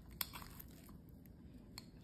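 Faint crunching and clicking of a table knife cutting through a slice of toasted bread topped with egg and cheese on a plate, with one sharper click about a quarter second in.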